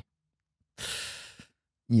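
A man's sigh: one short breathy exhale about a second in, fading away.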